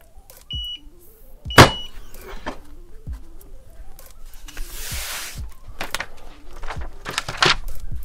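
Heat press timer beeping about once a second, and with the last beep the auto-open press pops open with a loud clunk. A few seconds later, a hiss as the plastic carrier sheet of the puff heat transfer vinyl is peeled off the shirt, with scattered handling clicks.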